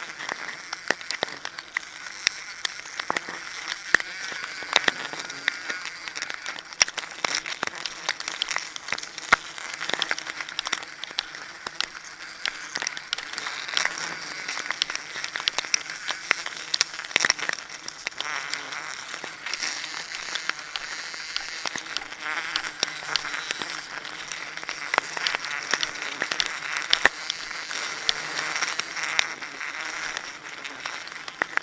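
Close-up handling noise: a plastic sack crinkling and rubber-gloved hands scraping against tree bark, making many sharp, irregular crackles. Insects buzz steadily underneath.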